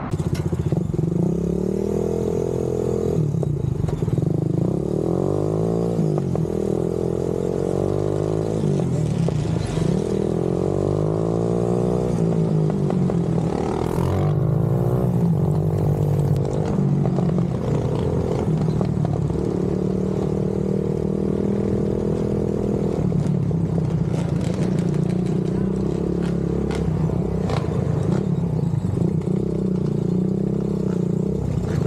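Honda ATV engine running under way, its pitch rising and falling over and over as the throttle is opened and eased off.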